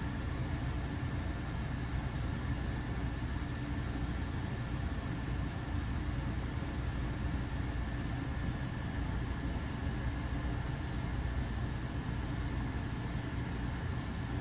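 Steady background hum and hiss of room noise, low and even throughout, with no distinct clicks or other events.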